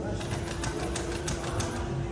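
Unitree quadruped robot dog ticking lightly and rapidly, about five clicks a second, over a steady hum.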